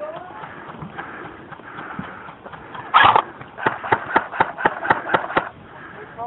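A game gun firing: one louder shot about three seconds in, then a rapid string of about eight sharp shots, roughly four a second.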